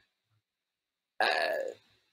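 A man's brief hesitation sound, "uh", about a second in, after near silence.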